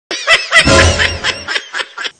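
Laughter sound effect: a loud run of laughing pulses over a low bass note, thinning to a few short laughs near the end.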